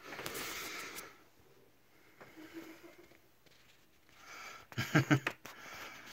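Handling noise from a phone being picked up and moved to film: a soft breathy rustle at first, then a quick cluster of knocks and bumps about five seconds in.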